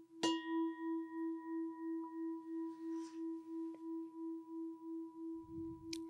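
Singing bowl struck once just after the start, then ringing on as a low hum with higher overtones. The hum pulses about three times a second and fades slowly, rung to begin the meditation.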